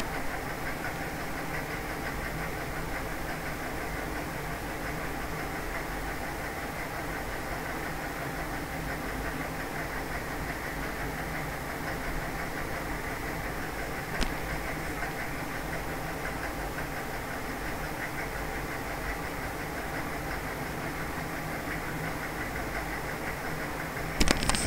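Steady mechanical background hum with hiss, even throughout, and a single faint click about fourteen seconds in.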